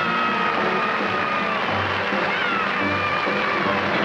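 A big dance orchestra playing, its high melody line sliding slowly down in pitch and then rising and falling, over a low bass note that recurs about once a second.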